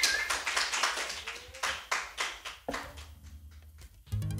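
Applause from a small audience: separate hand claps are heard, thinning out and fading away over the last second or so.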